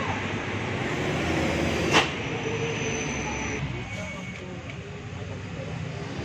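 Steady background noise with faint voices, broken by a single sharp click about two seconds in.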